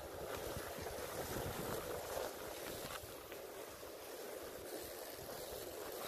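Lexus LX470 driving away across a snowy field: a distant rush of its V8 engine and tyres that swells over the first two seconds and then slowly fades, with wind buffeting the microphone.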